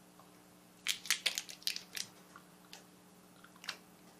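Teeth biting down on and crunching a rock-hard sour gumball: a quick run of sharp cracks about a second in, then a few single cracks later on. The gum is really hard, which the chewer puts down to the candy having been melted or left in the sun.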